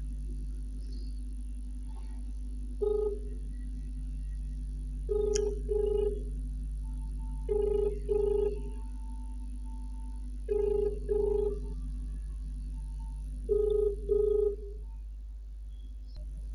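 Telephone ringback tone heard through a smartphone's loudspeaker while an outgoing call rings unanswered. It is a low double ring, two short tones close together, repeating about every three seconds: one single tone, then four double rings.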